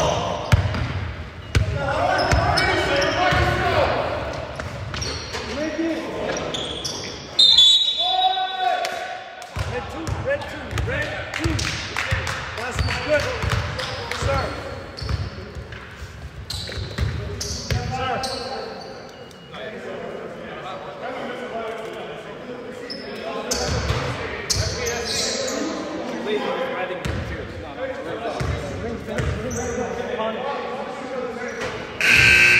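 A basketball bouncing on a hardwood gym floor, with players' voices echoing in a large gymnasium. A short, loud high-pitched tone cuts through about seven and a half seconds in.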